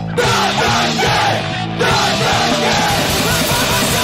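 Hardcore punk band recording: distorted guitars, bass and drums with shouted vocals. The band drops out briefly twice, at the very start and just under two seconds in, and comes straight back in at full level each time.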